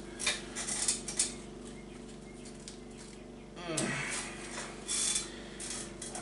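Blue painter's tape being peeled off a painted plastic RC car body and crumpled into a ball: scattered crackles and rustles in the first second or so and again near the end, over a faint steady hum, with a short murmur of voice a little past halfway.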